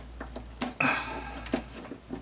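Hard plastic toy parts clicking and clattering as a transforming robot figure is picked up and handled, with one louder clack a little under a second in.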